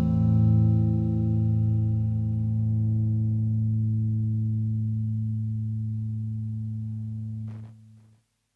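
The final held chord of an instrumental psychedelic rock track, ringing out through effects and slowly fading, then cut off with a short click near the end.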